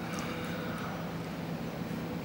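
A steady low hum of background ambience, like ventilation or distant traffic, with no clear event.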